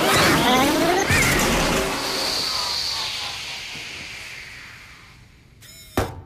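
Film sound effects over score: a loud rushing, whirring noise mixed with warbling robotic chirps, dying away over about four seconds, then a sharp click at the very end.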